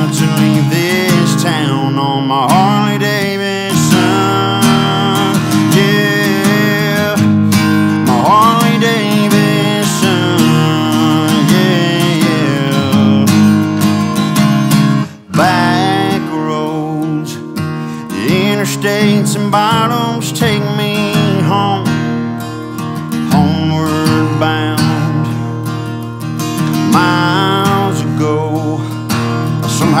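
Strummed acoustic guitar playing an instrumental break in a country song, with a lead melody line that bends in pitch over the chords. The music drops out for a moment about halfway through, then picks up again.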